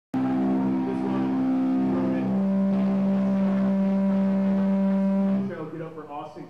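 Sustained amplified electric guitar tone held on one pitch, stepping down to a lower note about two seconds in, then stopping shortly before the end, where a man starts talking over the PA.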